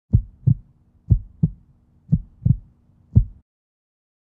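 Heartbeat sound effect: deep thumps in lub-dub pairs about a second apart, seven thumps in all over a faint low hum, cutting off suddenly near the end.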